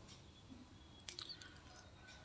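Near silence, with a few faint clicks about a second in from a hand pressing a roti down on a hot tawa.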